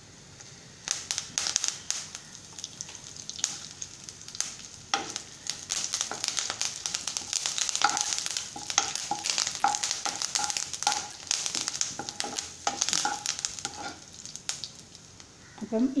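Fresh curry leaves hitting hot oil in a non-stick pan already frying mustard seeds, garlic and dried red chillies: the tempering sizzles and spits with sharp crackles. The crackling starts about a second in and grows dense through the middle, with a spoon stirring.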